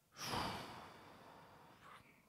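A man sighing: one long breathy exhale that fades out over about a second.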